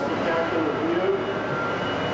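Indistinct voices of people talking, over a steady mechanical hum.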